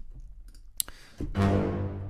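A click, then a little past halfway a single loud orchestral hit from ProjectSAM's Free Orchestra 'Bombastic Basses' sample patch: low strings, brass and piano layered in one low sustained chord.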